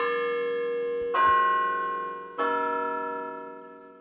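Three bell strikes about a second and a quarter apart, each ringing with many overtones; the last fades out slowly.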